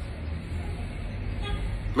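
Low, steady outdoor background rumble, with a faint brief tone about one and a half seconds in.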